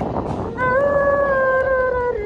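A single long, voice-like howling call that starts about half a second in and is held, wavering slightly and sliding slowly lower in pitch.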